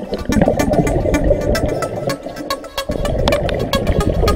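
Music with a quick, steady beat over a dense low rumble.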